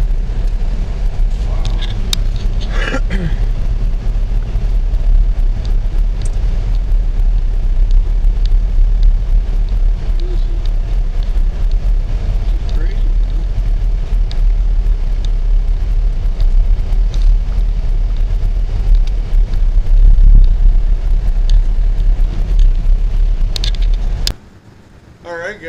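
Steady low rumble of a Dodge car driving on snow-covered roads, heard from inside the cabin: engine and tyre noise.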